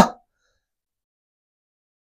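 A man's short spoken "huh" right at the start, then near silence.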